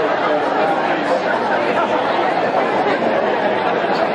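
Audience chatter: many people talking at once in a dense, steady murmur.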